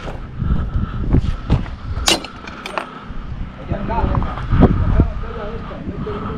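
Walking footsteps and thumps from a body-worn camera on a construction site, with a sharp metallic clink about two seconds in and smaller clicks after it, over a faint steady high whine.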